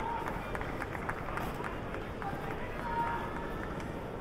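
Baseball stadium crowd ambience: a steady hubbub of many spectators with scattered individual voices.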